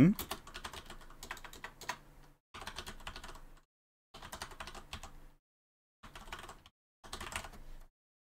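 Typing on a computer keyboard: five quick runs of keystrokes with short pauses between them.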